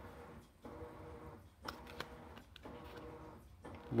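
Pokémon trading cards being handled: a few soft slides and light flicks of card stock as the cards are moved one by one through the hands, over a faint steady hum.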